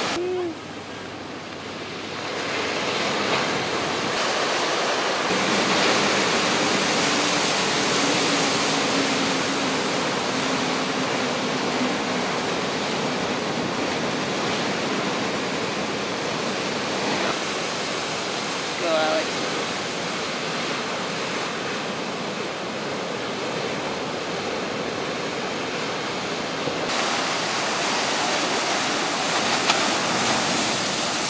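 Ocean surf breaking and washing in, a steady rushing noise. It dips briefly near the start and then holds level throughout.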